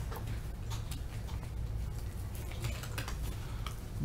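Computer keyboard being typed on: a run of light, quick key clicks over a faint steady low hum.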